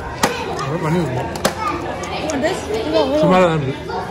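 People talking at close range, with two sharp clicks, one just after the start and one about a second and a half in.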